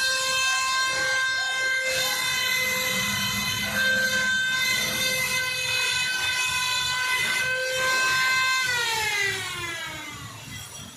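Crane under load while lifting: a steady high whine that glides down in pitch and fades about nine seconds in.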